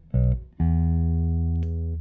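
2007 Korean-made Danelectro DC59 long-scale semihollow electric bass, played fingerstyle through an amp: a short plucked note, then a single long note plucked just after half a second in and left to ring almost to the end.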